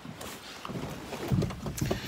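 Handling noise from a handheld phone: rubbing and rustling against the microphone, with low muffled bumps that build up in the second half.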